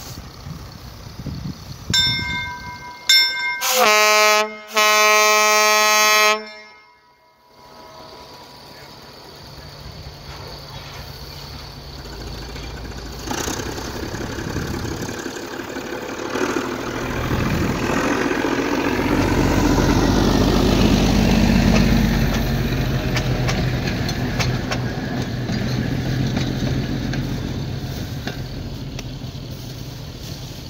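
A 1927 East Broad Top M-1 gas-electric motor car (doodlebug) sounds its horn: two brief toots, then two longer blasts, the second held longest. Its engine rumble then builds as it pulls away and passes, loudest around 20 seconds in, and fades toward the end.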